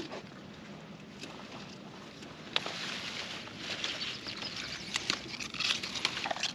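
Pea vines rustling and pea pods being picked by hand. It starts about two and a half seconds in, an irregular rustle with a few small sharp clicks.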